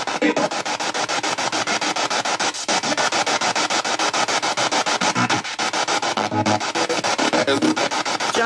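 A ghost box, a radio scanning rapidly through stations, playing through a JBL speaker. It makes a steady stream of choppy static, cut into about ten even pulses a second, with brief snatches of broadcast sound mixed in.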